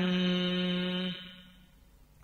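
A voice chanting Vietnamese verse holds the last note of a line steadily, then fades out about a second in, leaving a near-silent pause.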